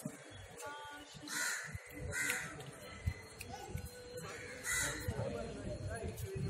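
Three short, harsh bird calls spaced over a few seconds, over a background murmur of distant voices.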